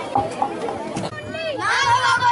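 Children's voices: a babble of talk with a few knocks, then a child's high voice calling out over it in the second half.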